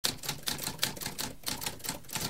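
Typewriter keys typing quickly, a rapid run of sharp clacks at about six keystrokes a second.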